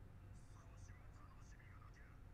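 Near silence: very faint, whisper-quiet speech over a steady low hum.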